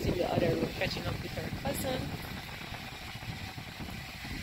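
Indistinct, muffled voices in conversation during the first couple of seconds, too faint to make out, over a low rumble of handling noise.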